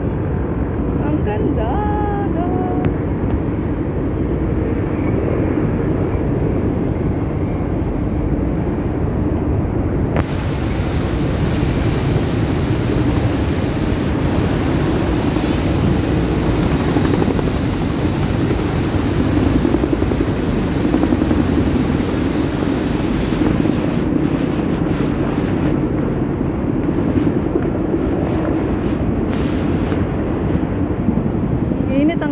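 City street traffic noise: a steady rumble of passing vehicles that never drops out, with faint voices near the start.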